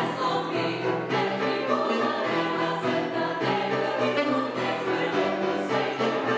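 Women's vocal ensemble singing together in harmony, holding chords that change every half second or so.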